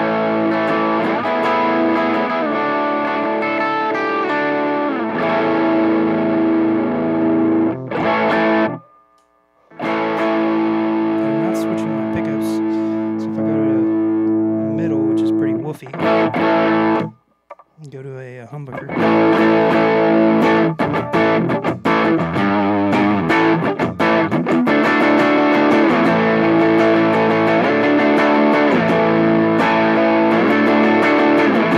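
Electric guitar played through an MXR Timmy overdrive pedal with the gain turned up, giving a driven, distorted tone. The playing goes on throughout, with two short breaks about a third of the way in and a little past halfway.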